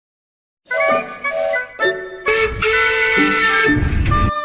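Music that starts about two-thirds of a second in: several short melodic phrases with a wind-instrument sound, then a fuller passage in the second half.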